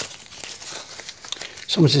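Light crinkling and rustling of a paper mailing envelope being handled, with small irregular clicks; a man starts to speak near the end.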